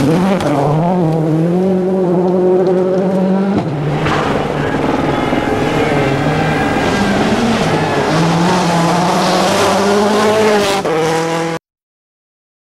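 Rally cars' turbocharged four-cylinder engines at full throttle on a gravel stage, the engine note rising and falling as the driver works the throttle. There is an edit to a second car about four seconds in, and the sound cuts off abruptly near the end.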